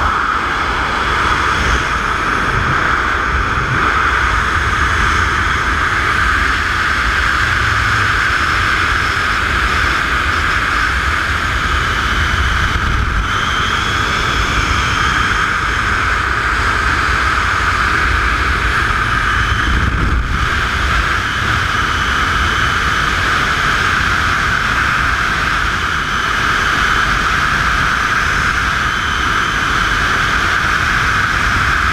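Freefall wind rushing steadily over a skydiver's camera microphone, loud and even throughout, with a low buffeting rumble underneath.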